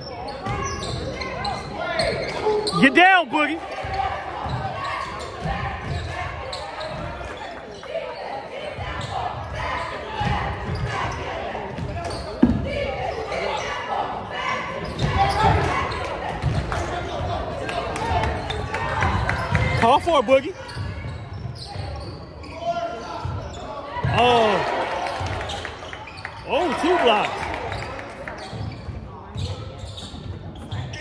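Basketball being dribbled on a hardwood gym floor while sneakers squeak briefly on the court a few times, over crowd chatter ringing in a large hall.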